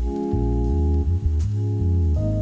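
Background music: sustained keyboard chords over a bass line that moves every half second or so.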